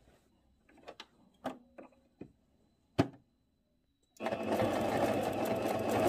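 A few light clicks. Then, about four seconds in, a Singer C5205 sewing machine starts stitching and runs steadily.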